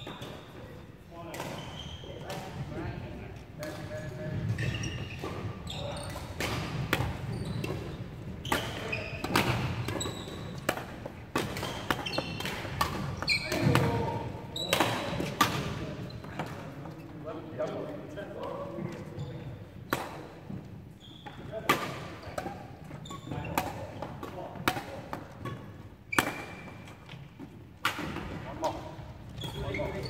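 Badminton rackets hitting shuttlecocks, sharp cracks at irregular intervals, with thuds of footwork on a wooden floor, in a large sports hall, over background voices.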